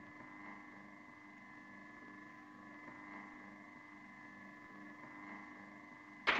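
Faint, steady hum of several held tones from the soundtrack of a 1930s film clip, played over a webinar stream.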